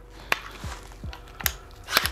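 Collapsible Maxim Defense PDW brace on a Daniel Defense DDM4 PDW rifle being slid along its rods, with a few sharp clicks as it moves between and locks into its positions, amid light handling noise.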